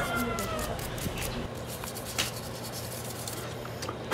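A toothbrush scrubs leftover adhesive off a phone's midframe in a few faint scratchy strokes. A long, slightly falling pitched cry carries over the first second.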